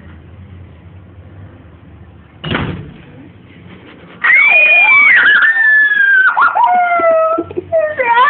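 A door slams shut once, about two and a half seconds in, to yank out a loose tooth. A second and a half later a girl cries out loudly in long, high wails that waver and fall in pitch.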